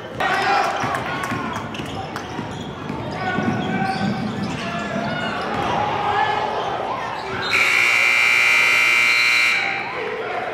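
Voices and court noise in a gym, then the scoreboard horn sounds one steady, buzzing blast of about two seconds near the end, signalling a stoppage in play.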